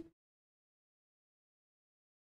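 Near silence: the sound track is dead quiet.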